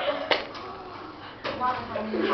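Girls' voices talking in a small room, broken by a quieter stretch in the middle, with one sharp knock about a third of a second in.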